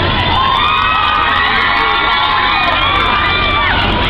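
Crowd of fans screaming and shouting, many high-pitched voices overlapping in a loud, continuous din.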